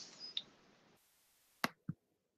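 Two short clicks near the end, a sharp one followed closely by a duller, lower one, over faint web-conference line hiss that comes in about halfway through.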